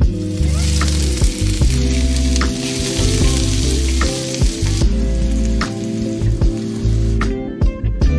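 Diced onion sizzling as it hits hot oil with frying cumin and coriander seeds and is stirred with a wooden spoon; the sizzle dies down about five seconds in. Background guitar music plays underneath.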